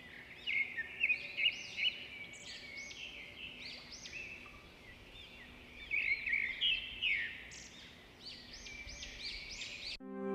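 Several small birds chirping, with many short, quick chirps overlapping one another; the chirping is busiest about half a second in and again around six seconds in.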